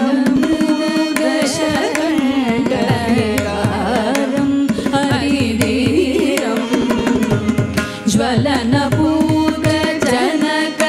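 Carnatic vocal music: women's voices singing a melodic line, accompanied by violin and a mridangam whose strokes sound throughout, some with a low pitch that drops.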